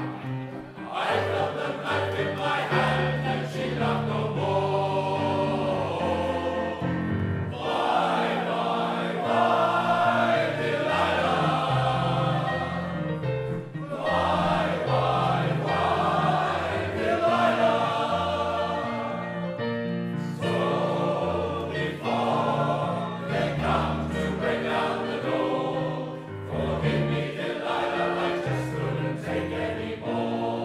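Welsh male voice choir singing a song in harmony, in phrases of about six seconds with short breath breaks between them.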